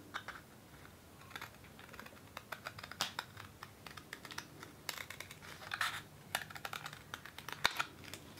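Scissors cutting around a circle in a sheet of white paper: a run of short, irregular clicking snips, with a few brief rustles of the paper being turned between them.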